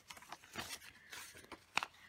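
Paper sticker sheets being handled and shifted: soft rustles and light taps, with one sharper tap near the end.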